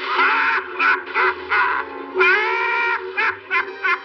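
A cartoon cat's pained yowls and yelps, in bursts: a long cry at the start, a few short yelps, a second long cry about two seconds in, then a quick run of short yelps, over the orchestral score.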